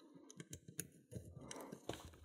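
Faint, irregular small clicks of a steel lock pick working the pins inside an old Russian padlock's pin-tumbler core during single-pin picking.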